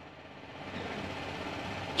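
Faint steady background engine noise, rising slightly about half a second in.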